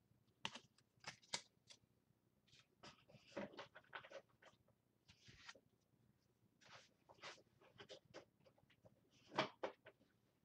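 Faint, irregular taps and rustles of trading cards and packs being handled, with a louder cluster of clicks near the end.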